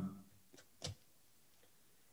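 Near-silent pause with the tail of a man's voice fading at the start, then two faint short clicks a little after half a second in, the second one louder.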